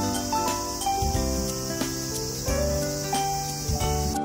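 A steady, high-pitched drone of insects, with background music playing a simple melody over it.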